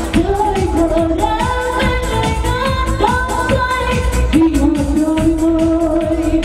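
A woman singing a Vietnamese song into a microphone over amplified backing music with a steady beat, holding long notes.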